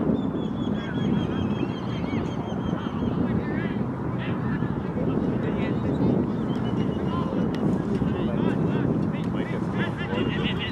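Wind buffeting the microphone, with distant shouting from players and spectators. A high warbling whistle-like tone lasts for about the first three seconds.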